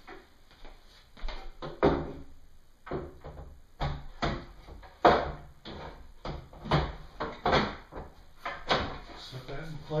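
A solid walnut table leaf being lowered and fitted into an extended pedestal table, giving a string of wooden knocks and thuds as it is seated between the table halves.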